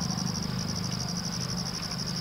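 Crickets chirping in a steady night chorus: a high, rapid, even pulsing trill of about twenty pulses a second that never stops.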